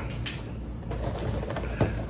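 Faint rustles and light knocks of hands rummaging through boxed vinyl figures inside a cardboard mystery box, over a low steady hum.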